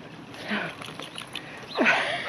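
Quiet outdoor background with small faint sounds, then near the end a dog starts whining, its pitch sliding up and down.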